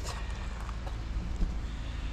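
Steady low background rumble outdoors, with no distinct sound standing out.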